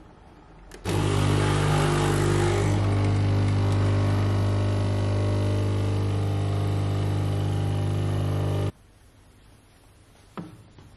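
Magimix Nespresso capsule machine's pump buzzing steadily as it brews an espresso. It starts about a second in with a burst of hiss over the first couple of seconds, then runs evenly and cuts off abruptly near the end as the brew finishes.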